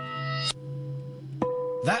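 A steady ringing note at about 500 Hz, the wine glass's resonant pitch, stops a little after a second in. Then an electric guitar string is plucked and rings at that same pitch, tuned to match the glass.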